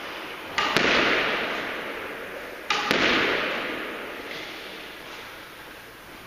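Squash ball struck twice, about two seconds apart, each a sharp double smack followed by a long echo dying away in the hard-walled squash court.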